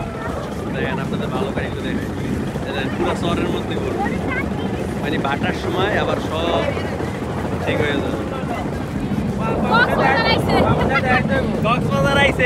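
Engine of a motor trawler (a wooden engine boat) running steadily, with wind buffeting the microphone. Voices come in over it, louder near the end.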